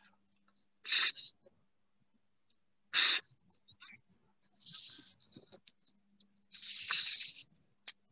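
A person breathing close to the microphone: four short breathy puffs of hiss, roughly two seconds apart, over a faint steady low hum.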